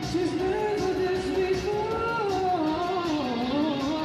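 Male voice singing a held high note, a G-sharp, over a live band backing, the pitch wavering with vibrato and sliding down near the end.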